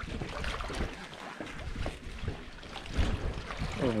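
Water splashing and sloshing as a snorkeler in a drysuit climbs down metal steps into the water, with a louder splash about three seconds in as he drops in. Wind noise sits on the microphone.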